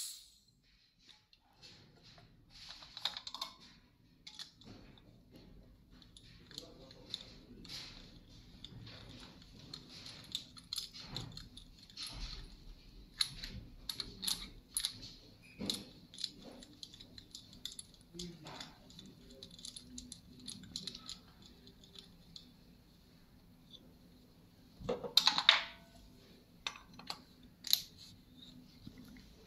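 Irregular light metallic clicks, taps and rattles of hand tools and compression-tester fittings being worked on a bare diesel engine's cylinder head, as the tester is moved from one cylinder to the next. A faint steady hum lies underneath, and a louder burst of clatter comes near the end.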